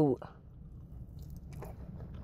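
Quiet chewing of a waffle fry, with a few faint mouth clicks.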